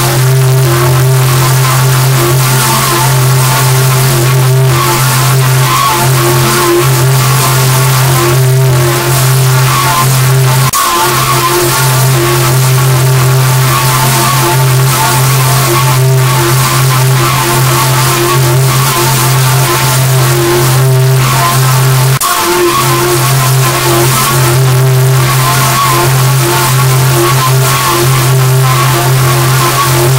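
Loud, heavily distorted digital audio from a pitch-shifted, many-times-layered logo edit: a steady low drone under a dense, harsh hiss, cutting out briefly twice.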